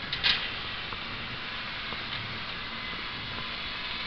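Distant diesel engines of tracked shovel-logging machines running, a steady faint hum under a hiss. A short burst of noise comes about a quarter second in.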